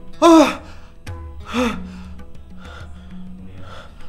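A person gasping in fright: a sharp, loud gasp about a quarter second in and a weaker one at about a second and a half, over sustained background music.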